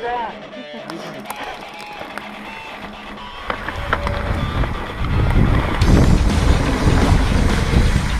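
Wind buffeting the camera microphone and the rumble of a mountain bike's tyres and frame running fast down a dirt trail. It starts low and grows loud about four to five seconds in.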